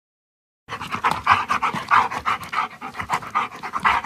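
A dog panting fast and evenly, several breaths a second, starting about a second in.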